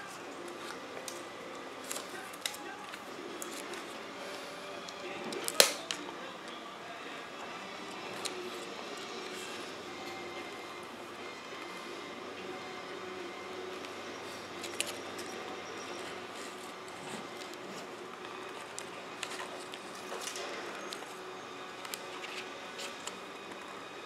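Faint handling sounds of a thin styrene strip with double-sided tape being peeled and pressed by hand along the base of a mold plug, with small scattered clicks and one sharp click about five and a half seconds in, over a steady background hum.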